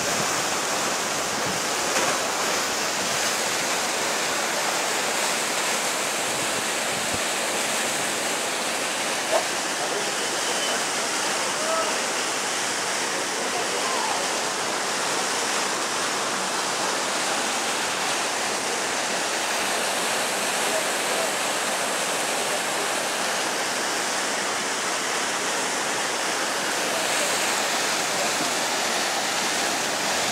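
Horcones River water rushing over rocks and small waterfalls: a steady, even rush that never lets up.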